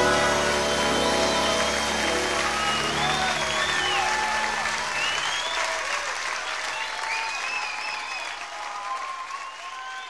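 A live concert audience applauding, with whistles and cheers, as the band's final sustained chord fades out in roughly the first half. The applause thins gradually toward the end.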